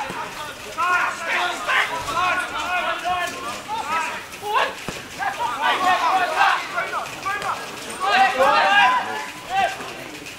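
Footballers shouting and calling to each other across the pitch during open play, several voices overlapping with no clear words, loudest in bursts about a second in, around the middle and near the end.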